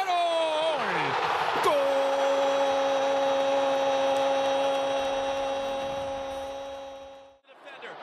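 Spanish-language TV commentator's long drawn-out goal call, "¡Gol!", held at one steady pitch for about five and a half seconds over stadium crowd noise. It comes after a quick falling phrase of commentary and cuts off abruptly near the end.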